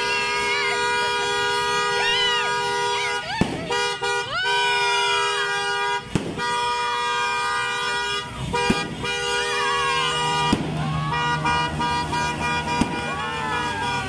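Horns sounding without pause, several held tones at once, over shouting and cheering voices, with about five sharp firecracker bangs spread through.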